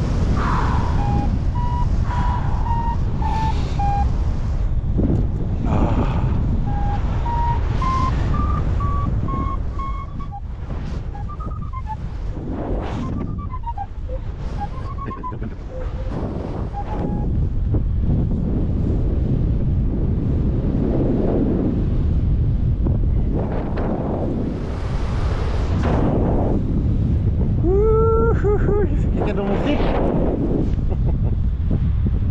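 A paragliding variometer beeping in short, evenly spaced tones that step up in pitch over the first ten seconds, signalling climb in a thermal. Steady wind noise on the microphone runs under it. A short voiced sound rises briefly over the wind near the end.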